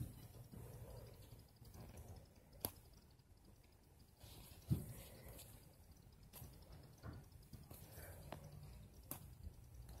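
Faint handling of a foam squishy toy close to the microphone: fingers squeezing and pressing it, with a few scattered soft clicks and one dull thump about halfway through.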